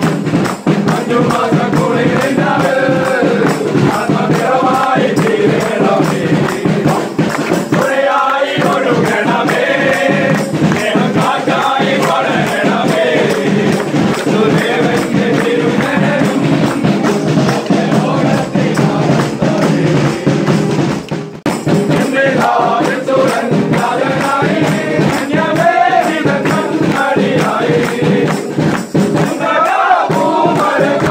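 Group of carol singers, men and women, singing a Christmas carol together with rhythmic hand-clapping keeping the beat.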